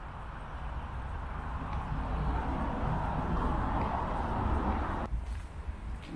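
Road and engine noise heard inside a moving car's cabin: a steady rushing with a low rumble that grows louder over the first couple of seconds and cuts off about five seconds in.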